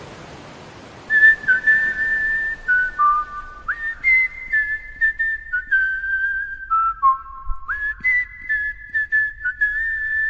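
A person whistling a slow tune, one clear note at a time with quick upward slides between some notes, starting about a second in. A soft wash of noise fades away just before the whistling starts.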